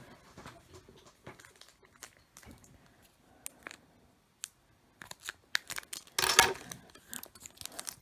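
Foil wrapper of a stubborn Pokémon trading card booster pack crinkling and rustling as it is worked at, with scattered small clicks, then torn open in a louder rip about six seconds in.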